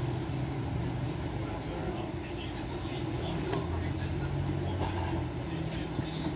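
Indistinct background voices over a steady low rumble, with a few faint clicks.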